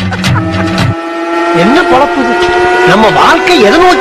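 A long, steady electronic tone, held on several pitches at once, with a voice speaking over it from about a second and a half in.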